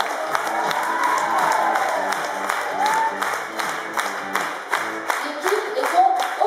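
Audience applauding with scattered cheers while music plays; the music stops about five seconds in.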